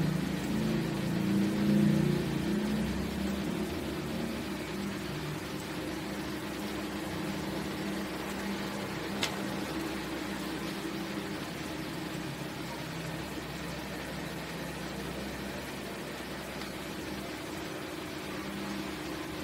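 Steady background hiss and low hum with no speech, and a single sharp click about nine seconds in.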